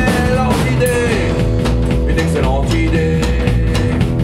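A rockabilly band playing live: upright double bass, electric guitar and drum kit, loud and dense, with bending guitar notes over the beat.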